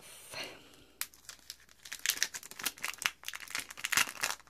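Clear plastic sleeve of a foil nail-sticker pack crinkling as it is handled between the fingers: a fast, uneven run of small crackles that starts faint and grows busier after about a second.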